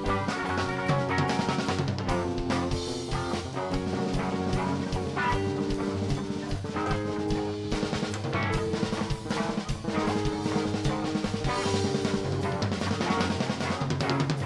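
Live rock band playing an instrumental passage with no vocals: busy drumming with many fast hits under sustained chords.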